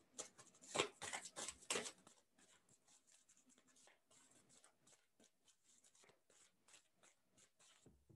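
A few brief rustles and clicks from handling a deck of angel oracle cards in the first two seconds, then near silence.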